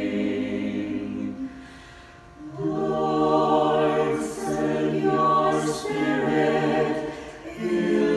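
Small mixed choir singing an a cappella sung prayer response in parts. A held chord ends about a second and a half in, and after a short pause the voices come in again and sing on in sustained chords.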